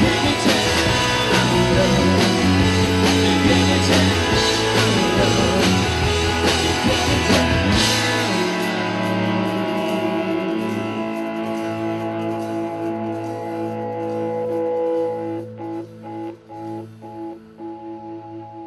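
Live rock band with electric guitars and drums finishing a song: full band playing until about eight seconds in, then a final hit and a held chord ringing out and slowly fading.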